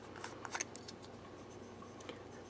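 Faint handling of a small plastic eyeshadow pot: a few light clicks in the first second as it is picked up and its screw lid taken off.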